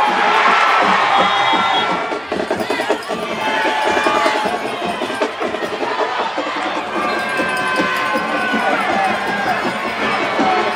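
Football stadium crowd cheering and shouting during a play, loudest at the start, with music playing in the stands underneath.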